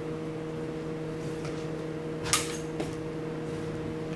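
A steady low hum with a few evenly spaced overtones, with one short hissing noise burst a little after two seconds in and a fainter tick soon after.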